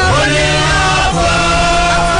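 A mixed group of men and women singing a worship song together, holding long notes and moving to a new note about a second in.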